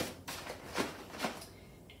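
Thin plastic dust cover rustling and crinkling as it is pulled down over a microscope and smoothed by hand, in a few short crinkles that die away near the end.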